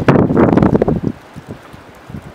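Strong wind buffeting the microphone in a loud gust that drops off about a second in, leaving a lighter, steady wind noise.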